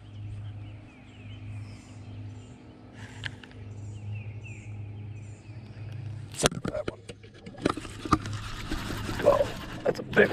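An electric trolling motor hums steadily while small birds chirp. About six and a half seconds in come a few sharp knocks, then rough handling noise and clicks.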